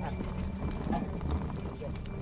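Animal hooves walking on hard ground in an irregular clatter, with a couple of brief faint calls about a second in and near the end.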